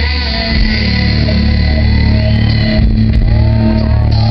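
Live rock band playing a song, with electric guitars over a sustained low bass, loud and recorded from the audience.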